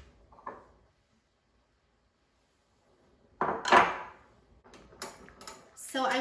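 Kitchen handling sounds: a light knife tap on a cutting board and a short scrape, then a couple of seconds of dead silence. About three and a half seconds in comes a louder clatter of cookware and utensils, followed by a few sharp clicks near the end.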